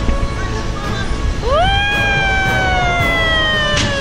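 A child's long, high cry of excitement that rises sharply about a second and a half in, then slides slowly down in pitch over about three seconds. Background music and low wind rumble on the microphone run underneath.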